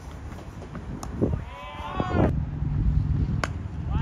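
A cricket bat strikes the ball with a sharp crack about a second in, and a voice gives a long, drawn-out shout as the shot goes for four. Another sharp knock comes near the end over a low steady rumble.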